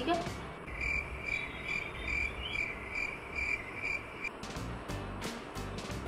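A high-pitched chirp repeated about twice a second for about three and a half seconds, over a low steady hum. A few soft knocks come near the end.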